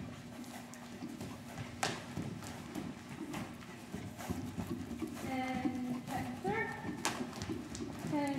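A Welsh Cob's hoofbeats as it trots loose on sand footing. A person's voice cuts in about five seconds in.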